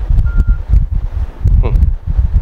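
Low, irregular rumbling and rustling on a clip-on microphone while a mobile phone is being handled. A short high beep sounds about a quarter second in, and a brief voice is heard near the end.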